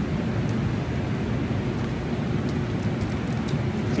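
Steady rushing hum of a laminar flow hood's blower pushing air through its HEPA filter, with a few faint clicks from handling the plastic bag.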